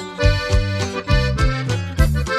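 Instrumental break of a Mexican corrido: an accordion plays the melody over a bass line that marks the beat.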